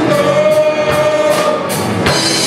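Gospel worship song sung by a group of singers with a live church band, held vocal notes over a steady beat of drum and cymbal hits.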